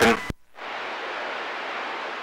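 CB radio static: a steady hiss between transmissions, starting just after a short click as the previous station's transmission cuts off.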